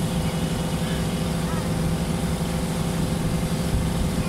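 Water bus engine running steadily with a low hum, heard on board while under way, with faint voices in the background.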